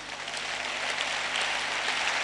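A congregation applauding, the clapping swelling a little in the first second and then holding steady.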